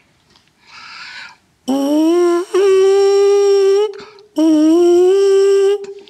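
A brass mouthpiece buzzed on its own, without the euphonium. After a short breath, the buzz slides up into a held high note, breaks off briefly, then comes back for a second held note at about the same pitch. It is a high-register exercise on the opening notes of a high passage.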